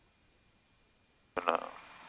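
Near silence with a faint steady high tone, then a little over a second in a man's voice cuts in abruptly, starting to speak.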